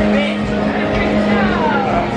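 Busy bar ambience: music and crowd chatter, with a tone that slides down in pitch over the last second.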